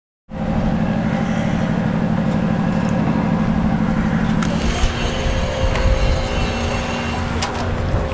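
An engine running steadily with a pulsing low hum that drops away about four and a half seconds in, over a continuous background rumble, with a few light knocks near the end.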